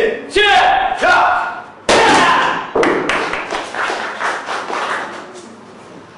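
Taekwondo board-breaking demonstration: a shout, then a sharp strike on a held board about two seconds in, followed by a few seconds of clapping and cheers that die away.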